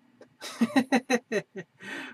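A man laughing: a quick run of short, breathy laughs lasting about a second.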